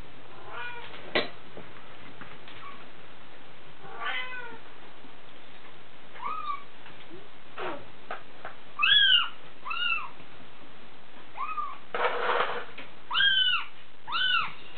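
Bengal kittens mewing, about six short high calls that rise and fall in pitch, the loudest ones in the second half. A few light clicks and a brief scuffling noise come between the mews.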